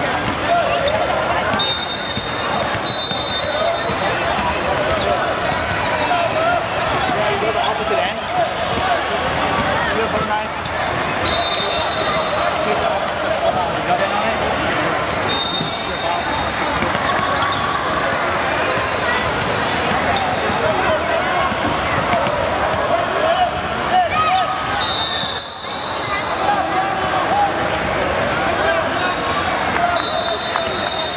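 A basketball being dribbled on a hardwood gym floor, among the voices of players and spectators, with several short high-pitched squeaks scattered through.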